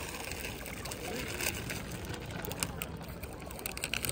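Outdoor ambience by a lake: faint, distant voices over a steady background noise, with a few short sharp clicks.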